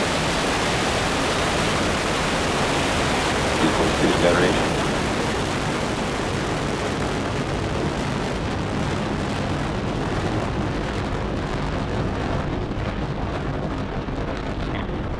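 Falcon 9's nine Merlin 1D first-stage engines running at full thrust through liftoff: a loud, steady noise that spans from the lowest to the highest pitches, with the highest pitches fading over the last couple of seconds as the rocket climbs away.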